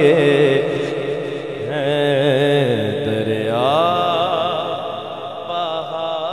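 A man singing a naat solo into a microphone, drawing out long, ornamented notes with a wavering pitch. About three and a half seconds in, his voice slides up to a higher held note.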